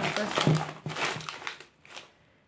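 Plastic packaging crinkling and rustling as snack items are handled and pulled out of a plastic mailer bag, in a run of rapid crackles that fades out about a second and a half in.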